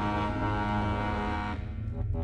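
Contemporary chamber music: sustained accordion chords over a low, rumbling drone. About one and a half seconds in, the higher tones stop suddenly and the low drone carries on.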